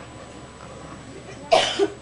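Quiet room tone, then a man coughs once into a microphone about a second and a half in.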